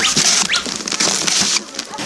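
Traditional Dene snowshoes scraping and crunching on hard, icy snow as the wearer slips on a steep slope.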